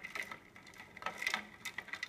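Ice cubes clinking against each other and the clear plastic bowl as a small plastic doll is pushed down into the ice water: a scatter of light, irregular clicks.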